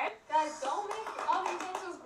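Several young women's voices talking over one another, with hand clapping, after a brief lull at the start.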